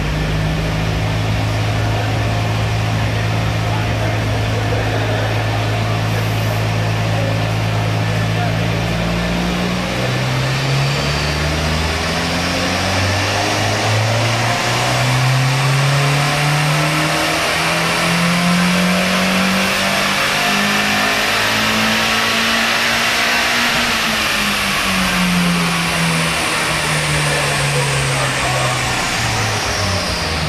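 Mazda MX-5's 1.8-litre four-cylinder engine on a chassis dyno doing a power run: it holds a steady speed for about ten seconds, then revs climb smoothly in one long pull to a peak over the next thirteen seconds or so, then the revs fall away over the last few seconds. A faint high whine rises and falls with the engine.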